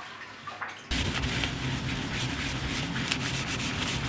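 A cloth rubbed briskly over a copper etching plate, a steady scrubbing that starts abruptly about a second in, over a low hum.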